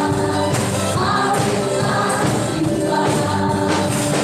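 Live praise and worship band with keyboard and electric guitars playing under a group of singers singing together, steady and continuous.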